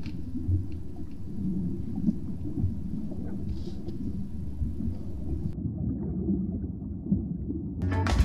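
Low, irregular underwater rumble of moving water, with a few faint clicks; about five and a half seconds in the upper end drops away and the sound turns more muffled.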